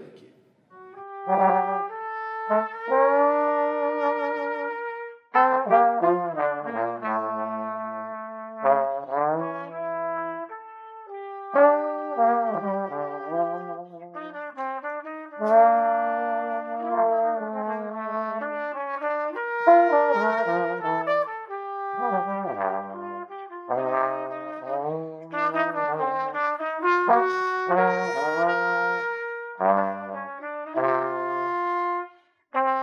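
Trumpet and trombone playing a duet, the trumpet carrying the melody over a lower trombone line, with held notes and short breaks between phrases.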